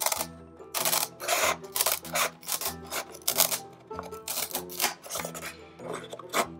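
Large scissors cutting through a thin wooden plate, a series of sharp snips about one every half second to a second, over steady background music.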